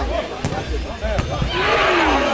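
Players and spectators shouting on an open football pitch, with two sharp thuds of the football being kicked about half a second and a second in; the shouting grows louder near the end.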